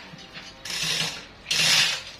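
Manual chain hoist (chain block) worked by its hand chain, hoisting a heavy log slab: two bursts of chain rattle and ratchet clicking, about half a second long and a second apart.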